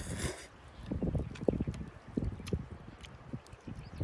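Noodles slurped from chopsticks in a quick burst at the start, then chewing close to the microphone, heard as irregular soft low knocks and small clicks.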